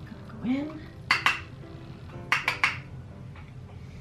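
Sharp clicks and clinks of a makeup compact being handled and opened, two about a second in and three quick ones about two and a half seconds in.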